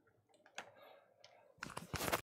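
Quiet room tone with a faint click about half a second in, then a quick run of sharp clicks near the end.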